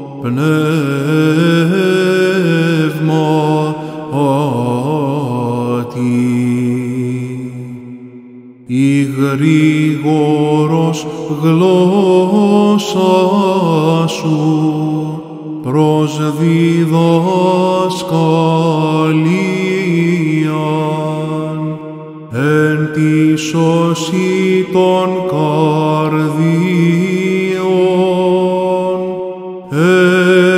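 Solo male Byzantine chant in Greek: a hymn sung in long, ornamented phrases over a low held drone (the ison). The singing breaks off briefly between phrases, about a third of the way through, again about three quarters through, and just before the end.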